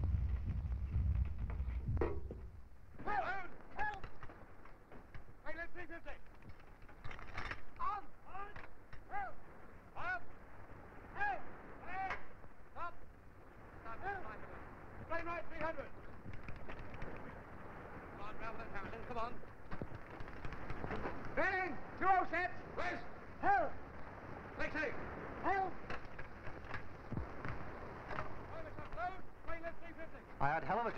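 Indistinct men's voices calling and talking in short bursts, over the steady hiss of an old film soundtrack.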